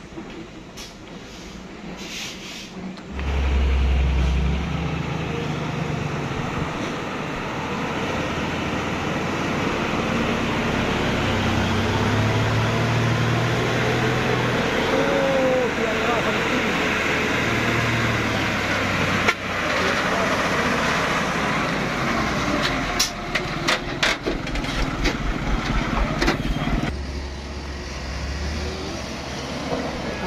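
A truck engine running loud and steady, with people's voices mixed in. The engine swells about three seconds in, and sharp clicks and knocks come near the end.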